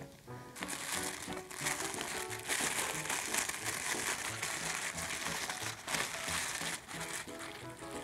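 Tissue paper rustling and crinkling as it is lifted out of a small cardboard box, over soft background music with a light beat.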